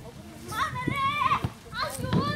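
A cat meowing: one long, high meow about half a second in, then shorter rising calls near the end.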